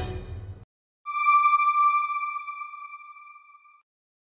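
News background music cutting off, then a single bell-like electronic chime that rings and fades over about three seconds: the broadcaster's logo sting.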